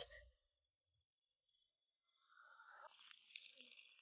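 Near silence, with only a very faint hiss in the second half and a tiny tick about three seconds in.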